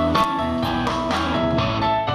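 Live band playing an instrumental rock-and-roll passage, with electric guitar and stage piano. The notes fall on a steady pulse of about four a second.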